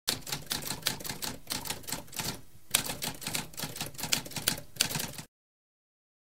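Typewriter keys striking in a rapid run of clacks, with a brief pause about two and a half seconds in, stopping cleanly a little after five seconds.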